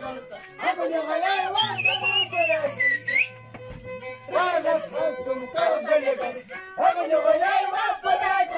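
Andean carnival music of violin and harp, the melody running in repeated phrases. A high whistle rides over it from about two to three seconds in.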